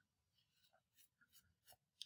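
Near silence: room tone, with a few very faint ticks.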